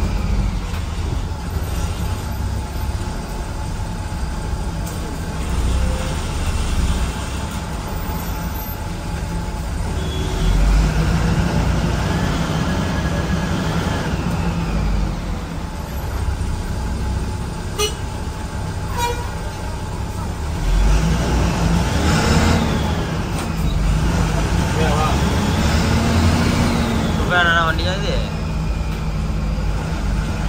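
The diesel engine of an SETC AC sleeper bus, heard from inside the cabin, running steadily under load as the bus moves slowly through traffic, getting louder about ten seconds in and again about two-thirds of the way through. Vehicle horns toot among the traffic, and voices are heard.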